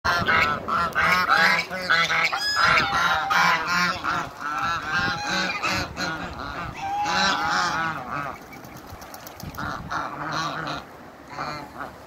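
A flock of African geese honking: a rapid, overlapping run of calls for most of the first eight seconds, then thinning to a few quieter honks.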